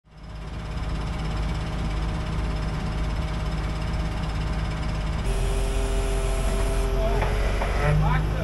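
A geothermal drilling rig's engine running steadily with a low drone and a constant whine. About five seconds in the sound shifts to a different steady tone, and near the end a few short rising and falling tones come over it.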